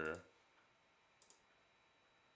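Two quick, faint computer-mouse clicks close together about a second in, as the microphone input is switched on in the software mixer.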